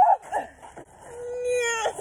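Girls' voices crying out in excitement, then one long held 'ooh' that rises sharply at the end.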